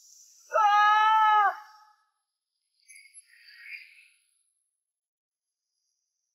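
A woman's single held cry, steady in pitch and about a second long, shortly after the start, followed a couple of seconds later by fainter brief sounds.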